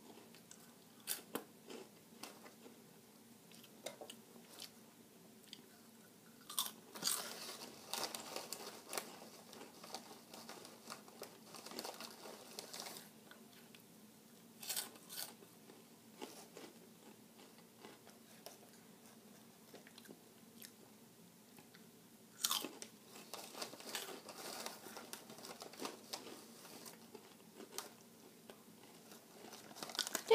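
Flamin' Hot Cheetos being bitten and chewed close to the microphone: faint, irregular crunching, with a few louder spells of crunching scattered through.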